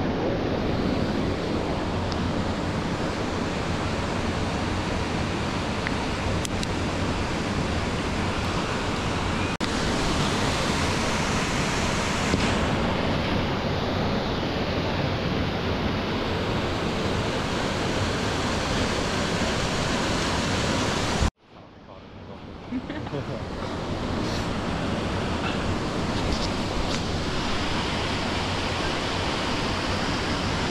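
Steady rushing of a river and waterfall in a rocky gorge, an even, continuous sound of falling water. It cuts out abruptly about two-thirds of the way through and swells back up over the next couple of seconds.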